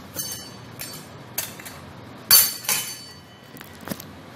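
Kitchen utensils and dishes clinking and knocking during food preparation: about six short, sharp clinks with a brief ring, the loudest a little past halfway.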